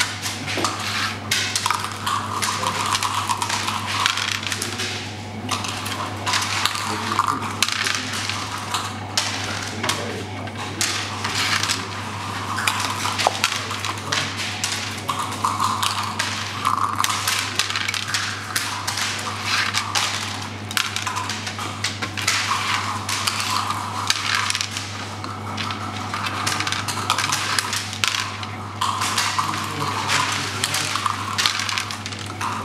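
Checkers clacking and sliding on a wooden backgammon board in quick, irregular clusters of clicks as moves are played, with dice rolled onto the board, during fast play of long backgammon (nardy).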